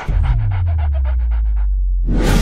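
Song breakdown: a deep bass note slides down and then holds, under a stuttering sound that repeats about ten times a second and stops just before the end.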